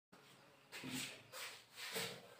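Three faint rubbing strokes against a whiteboard, about a second in, near the middle and near the end.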